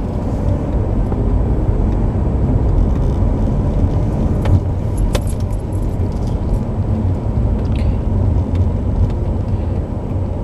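Steady low rumble of a car's engine and tyres heard from inside the cabin while driving, with a few light clicks or rattles about halfway through and near the end.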